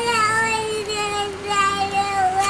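A young child's voice holding one long drawn-out note, wavering and dropping slightly in pitch.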